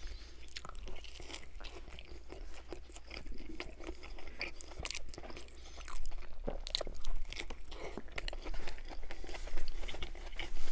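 Close-miked chewing and crunching of a Burger King Original Chicken Sandwich with shredded lettuce: irregular crisp crunches and wet mouth clicks, loudest about six seconds in and again near the end.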